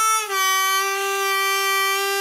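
A B-flat diatonic harmonica playing a single sustained three-hole draw note, bent down a step and a half about a quarter second in and held steady at the bent pitch.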